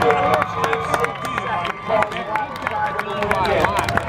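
Drag strip crowd cheering, calling out and clapping, with a faint low engine drone fading out in the first couple of seconds.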